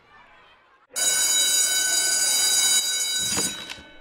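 Electric school bell ringing loudly: it starts suddenly about a second in, rings steadily for about two and a half seconds, then cuts off and rings down.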